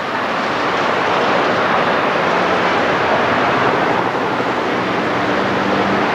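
Steady, loud wash of vehicle traffic and engine noise, with a low steady hum coming in near the end.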